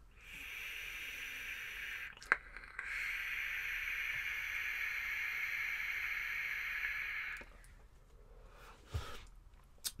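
Vape draw through a rebuildable atomizer's 3 mm air pin while the coil fires: a steady airy hiss for about two seconds, a click, then a longer, louder pull of about four and a half seconds that stops suddenly.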